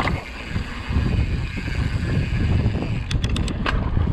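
Wind buffeting the camera microphone over the rumble of a mountain bike rolling along a dirt trail. A quick run of sharp clicks comes about three seconds in.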